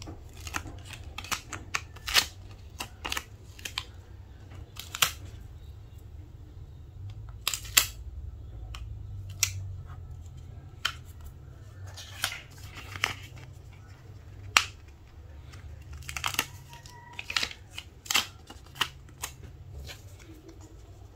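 Vinyl stickers being peeled from their backing paper and pressed by hand onto a MacBook Air's aluminium lid: irregular crackles, ticks and small taps, over a steady low hum.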